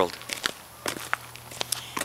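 Footsteps crunching on snow: a string of short, irregular crunches as a person walks.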